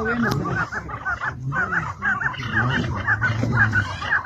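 Chukar partridges calling: a quick, continuous run of short, repeated clucking notes, several per second.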